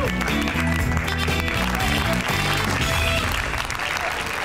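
Game-show theme music sting, a short melodic passage with a steady bass line, over studio audience applause.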